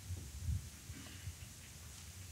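Quiet room tone with a few dull low thumps, the strongest about half a second in, over a faint low hum.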